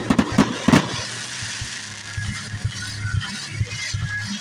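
Fireworks going off: a quick run of four sharp bangs in the first second, then a rumbling crackle with scattered smaller pops.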